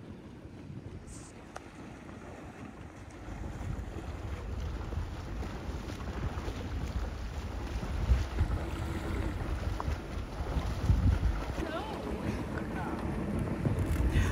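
Wind rumbling on the microphone over the rush of sea water past a moving sailboat, getting louder a few seconds in.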